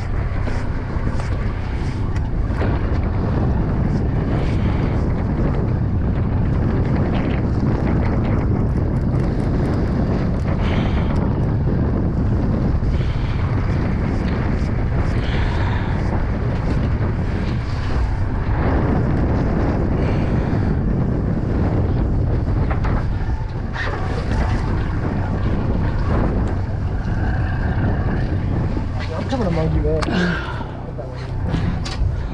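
Steady wind noise buffeting the microphone, a constant low rumble, over the wash of choppy sea water.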